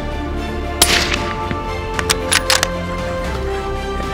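A single rifle shot from a suppressed, scoped hunting rifle about a second in, followed by a few short sharp clicks, all over background music.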